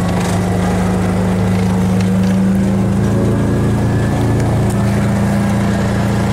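Kubota utility vehicle's engine running at a steady speed while driving across a field, a loud, even drone with the rumble of the ride over rough ground.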